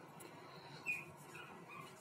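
A young chihuahua puppy gives a faint, short, high squeak about a second in, with a fainter one near the end, while being held up in the hand.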